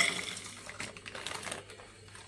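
Small dry pieces of chaga fungus pattering and clicking into a glass French press as they slide off a paper sheet, with the paper rustling. The loudest clatter is at the very start, then it thins out and fades over about a second and a half.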